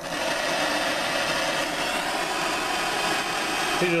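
Bernzomatic MAPP gas hand torch burning with a steady hiss of flame, held on a glued PVC fitting to heat and soften it.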